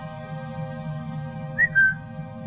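Background film-score music: a held chord over a low hum, with a short, loud high whistle-like note near the end.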